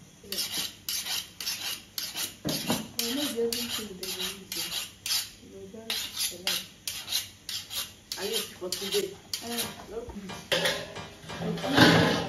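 A kitchen knife being sharpened by stroking its blade against another knife's blade: a steady run of quick metal-on-metal scraping strokes, about three a second.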